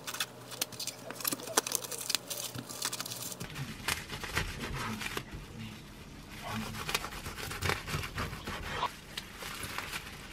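Plastic cling film crinkling as it is pulled tight around a thick toast sandwich, then a knife sawing through the film-wrapped sandwich on a wooden cutting board.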